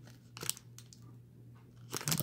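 A few brief crinkles from a torn Topps foil card-pack wrapper being handled and pressed down, the clearest about half a second in, over a faint steady low hum.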